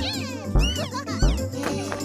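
Upbeat cartoon music with a low thumping beat about every 0.7 s, overlaid with a cartoon cat character's squealing, meow-like vocal sounds that glide up and down in pitch.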